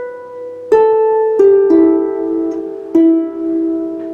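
Lever harp played one note at a time: a few plucked notes stepping down in pitch, each ringing into the next, the last left to ring on.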